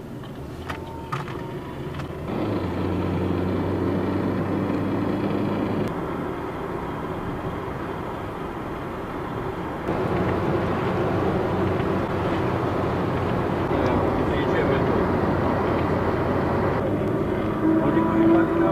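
Car interior while driving: a steady engine hum under tyre and road noise. The sound changes abruptly several times, getting louder or quieter.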